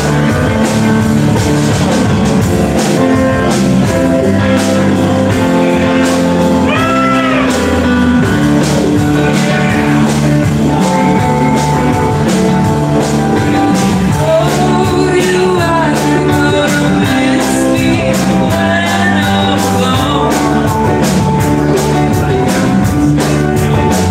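Live band playing a song: electric guitar, bass, keys and drums, with singing over the top that comes and goes.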